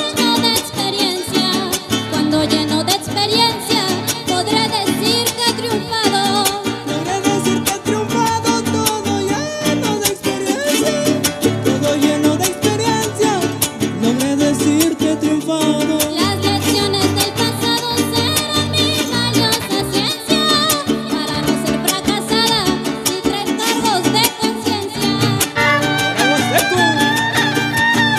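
Huapango huasteco music from a string trio: the violin plays the melody over strummed accompaniment from the jarana and huapanguera.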